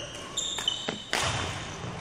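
Court shoes squeaking and feet landing on a wooden sports-hall floor during badminton footwork, with a few high squeaks about half a second in and knocks of footfalls around a second in, echoing in the hall.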